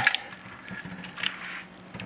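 Faint handling noise of a plastic wiring-harness connector being picked up and moved by hand, with a few light clicks and rustles.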